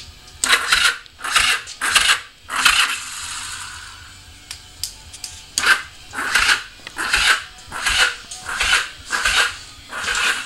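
1982 Kawasaki KZ750's electric starter engaged in short bursts, each a harsh metallic grinding rattle. There are four in the first three seconds, then six more after a pause, and the engine does not catch.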